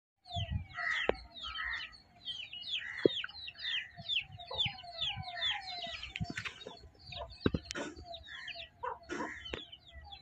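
Baby chicks peeping constantly, with short high calls several times a second, each falling in pitch, while a mother hen clucks lower among them. A few sharp clicks stand out.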